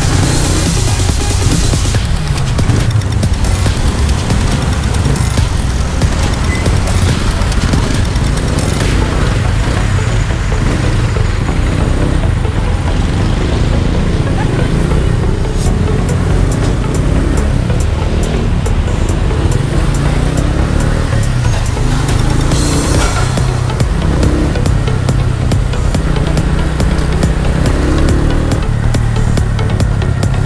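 Motorcycle riding noise, a steady low engine and road rumble while moving through traffic, with background music playing over it.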